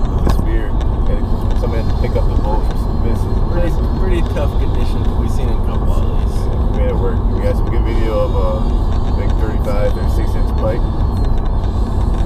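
Steady low road and engine noise inside a moving car's cabin, with quiet voices talking under it.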